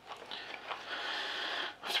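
A man's long, breathy exhale, a sigh lasting just over a second, before speech resumes at the very end.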